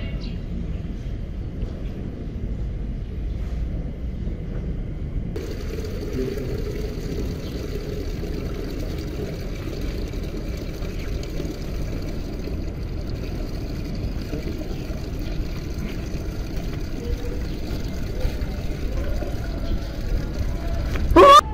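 Steady low rumble of wind on the microphone, unchanging throughout.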